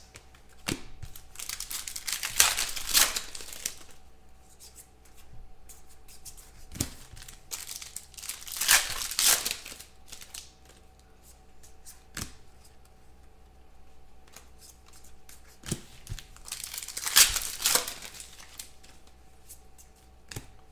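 Foil wrappers of 2016 Phoenix football card packs being torn open and crinkled, in three bursts, with a few light knocks in between.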